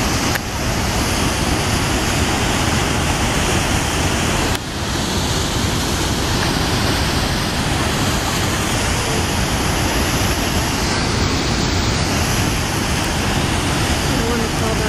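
Niagara Falls: the steady, dense rush of a huge volume of falling water, loud and even across every pitch, with a brief dip about four and a half seconds in.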